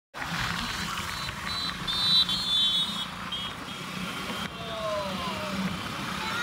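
Steady road and engine noise from a moving vehicle, with a high multi-tone vehicle horn sounding in several short blasts through the first half.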